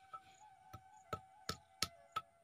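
Stone roller of a sil-batta grinding stone knocking down on the stone slab, pounding unripe neem fruits: about five short, sharp knocks less than half a second apart.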